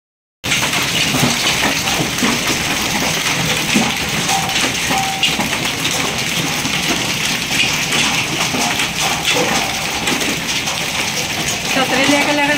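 Hailstorm: hailstones and rain falling and striking a paved courtyard floor and the objects around it, a dense, steady clatter of many small hits.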